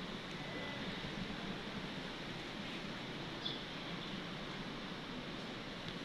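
Steady, even background hiss of outdoor ambience, with no distinct knocks, strokes or voices standing out.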